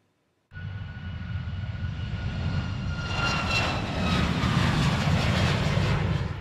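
Jet engines of a Boeing 737 MAX climbing out after takeoff. The sound starts about half a second in as a steady rushing roar with a thin whine on top, and it grows louder, the whining tones sinking slightly in pitch.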